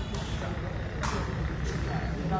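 A few sharp knocks, the strongest about a second in, from a sepak takraw ball being kicked during a rally. They sit over a steady low hum and the murmur of onlookers.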